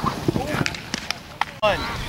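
Thudding footsteps of someone running on grass, about three a second, that cut off suddenly near the end.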